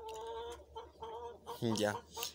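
Chickens clucking: one drawn-out call, then a few shorter clucks.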